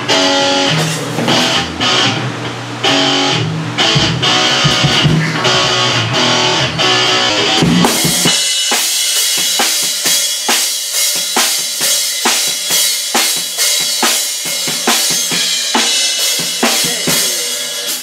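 Electric guitar played through a small amp, riffs and chords, for about eight seconds; then it gives way abruptly to a drum kit with Zildjian cymbals played in a fast, dense run of snare and cymbal hits.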